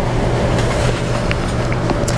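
Steady background noise with a continuous low hum and no clear events.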